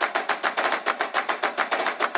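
Rapid, even drum roll in a music sting, about eight hits a second.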